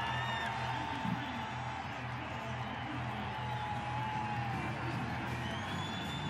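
Stadium crowd cheering and whooping over a band playing music with a steady, repeating low beat, in celebration of a touchdown.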